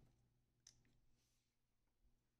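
Near silence, with one faint click about two-thirds of a second in from a fingertip pressing a button on a karaoke machine.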